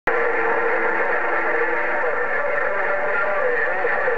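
President HR2510 radio on 27.085 MHz playing an incoming transmission through its speaker: a steady hiss with carrier tones and a faint, garbled voice underneath.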